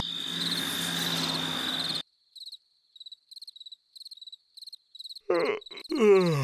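Cricket chirping: a steady high trill over a low hum for about two seconds, then separate chirps, roughly two a second, in near silence. Near the end a cartoon larva's voice slides down in pitch in a yawn.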